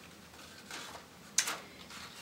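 Light handling noise of a zippered paintbrush case and its card packaging: a faint rustle, then a single sharp click about one and a half seconds in.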